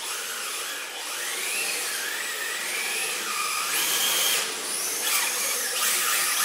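Yokomo MR4TC 1/10-scale RC drift car's electric motor and drivetrain whining, the pitch rising and falling again and again as the throttle is worked, over a steady hiss.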